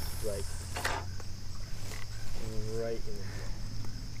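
Insects trilling steadily as a thin, high, unbroken tone over a low steady rumble, with a few spoken words.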